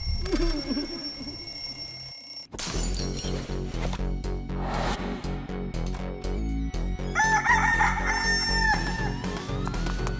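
Background cartoon music with a steady beat, and a rooster crowing once, a long wavering call, about seven seconds in.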